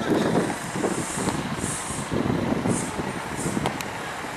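A motor vehicle passing on the street: steady engine and road noise with no clear pitch.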